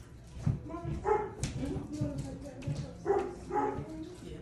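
A dog vocalizing in two short bouts, about a second in and again just after three seconds.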